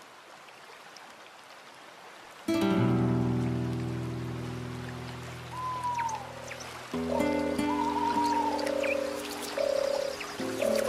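Background music for an animated intro: faint hiss, then a sustained low chord that comes in suddenly about two and a half seconds in and slowly fades. The chord changes about seven seconds in, and a melody of short high notes starts near the end.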